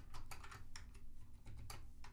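Typing on a computer keyboard: a quick, irregular run of soft keystrokes.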